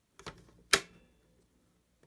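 Drafting tools handled on a drawing board: a few light clicks and taps, then one sharp hard click with a brief ring about three quarters of a second in.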